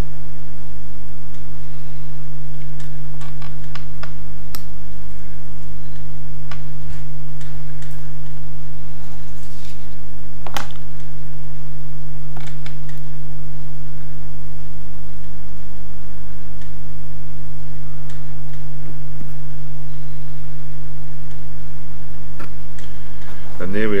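A craft knife cutting thin card along a steel rule on a cutting mat, giving a scatter of small sharp clicks and scrapes over a steady low hum.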